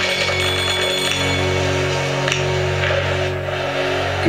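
Country radio station music on FM radio, with long held notes ringing steadily.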